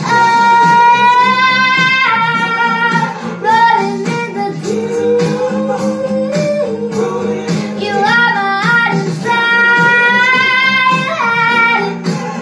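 A girl singing a pop song solo over instrumental accompaniment, holding one long note in the first two seconds and another near the end.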